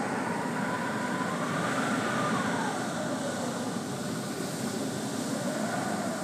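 Howling wind: a steady rush with a faint whistle that slowly rises and falls, twice.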